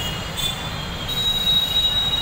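Loud low rumble with a steady high-pitched squeal that steps up in pitch and grows stronger about a second in, from a passing vehicle.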